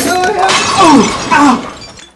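A crash with glass shattering, mixed with men's voices crying out in falling pitch. It fades out near the end.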